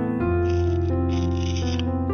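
Soft piano background music, with two stretches of papery rasping as washi tape is pulled off its roll.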